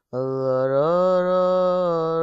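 A wordless chanted vocal note with a rich ring of overtones, starting just after a short pause, gliding up a little about a second in and then held steady.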